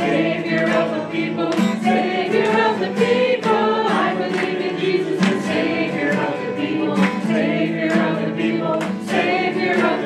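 A hymn sung by a group of voices, accompanied by two strummed acoustic guitars.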